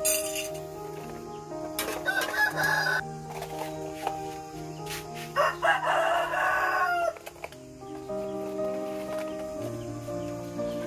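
A rooster crowing twice, each crow lasting a second or more, the second ending on a falling note, over background music.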